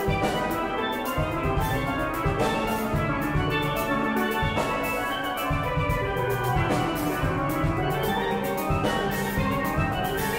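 A steel band playing a calypso arrangement: many steelpans ringing out in quick struck notes over bass pans and a drum kit keeping the beat.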